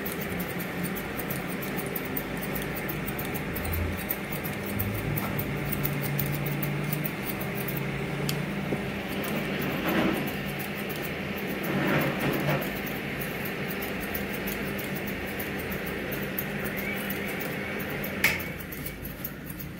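Barber scissors cutting short hair over a comb, with the comb working through the hair, against a steady low background hum. Two louder rustling swells come about halfway through.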